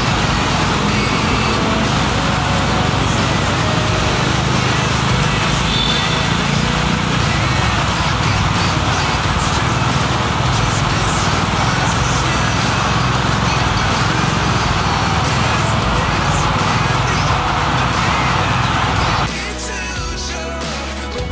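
Steady rush of wind on the microphone mixed with a motorcycle's engine and the surrounding traffic while riding through a road tunnel. Near the end the ride sound drops away and background music takes over.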